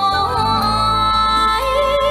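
A woman singing a Vietnamese song with band accompaniment: long held notes with vibrato over a steady bass line.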